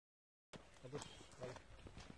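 Dead silence for the first half second, then faint outdoor sound: a few light footsteps on bare granite rock, with a faint voice.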